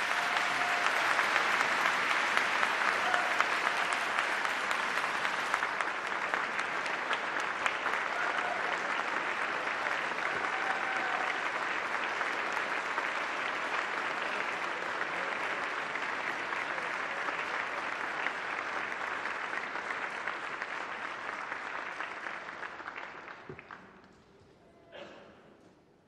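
Audience applauding steadily for about twenty seconds, fading away in the last couple of seconds.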